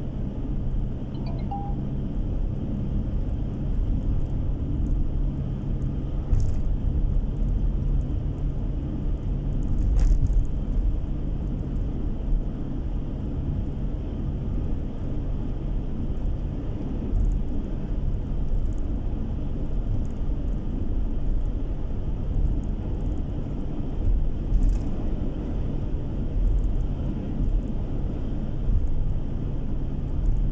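Steady low rumble of a car's engine and tyres on the road, heard from inside the cabin while driving at a steady speed, with a few faint knocks along the way.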